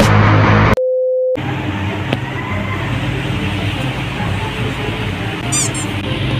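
Background music cut off just under a second in by a single steady electronic beep lasting about half a second. Quieter background music then carries on.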